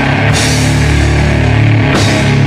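Loud heavy rock music played by a band with a drum kit and sustained bass notes; the cymbals come back in about a third of a second in.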